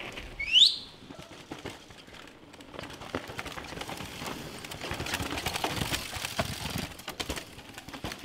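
A single short whistle rising sharply in pitch, the loudest sound. After it comes a steady rustling noise with scattered clicks.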